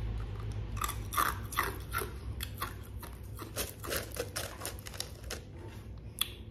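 Ice cubes being bitten and chewed, a run of irregular sharp crunches and cracks that starts about a second in.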